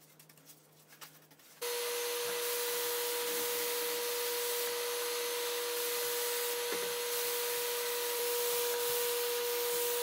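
Faint brush strokes on wood. Then, about a second and a half in, a paint spray gun starts spraying: a loud, steady hiss of air with a steady whine under it.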